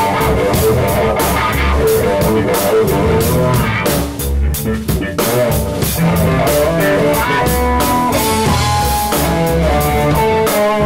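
Live rock band playing an instrumental passage: electric guitar, electric bass and drum kit, with the cymbals going steadily. About four seconds in the cymbals drop out for about a second, then the band comes back in and the electric guitar plays a lead line of held, bending notes.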